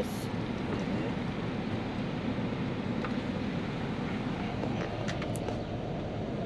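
Steady rumble of a stationary van with its engine running and street noise through the open door, with a short high hiss right at the start from a hand pump sprayer misting disinfectant into the cab.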